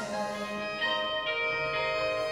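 A live rock band holding ringing, sustained notes and chords, with fresh notes coming in about a second in; no drums are playing.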